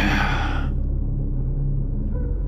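A low, steady droning rumble from the film's score or sound design, with a short breathy rush of noise at the start that fades out after under a second.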